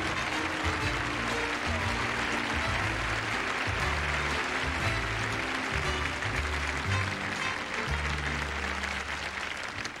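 Audience applauding over walk-on music as a presenter crosses the stage. The music's low notes change every second or so, and the clapping eases slightly toward the end.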